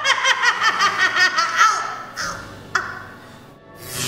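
A woman's high-pitched witch's cackle in rapid pulses, about seven a second, dying away about two seconds in, over background music.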